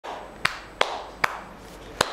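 A person clapping their hands three times, evenly, a little under half a second apart.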